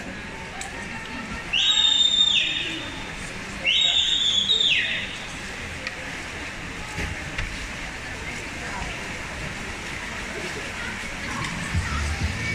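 Indoor swimming-pool crowd noise during a race, with two loud, shrill spectator whistles, each about a second long and ending in a falling pitch, a couple of seconds apart. Near the end the crowd noise grows.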